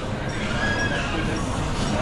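A man laughing breathily, with little voice in it, for about two seconds.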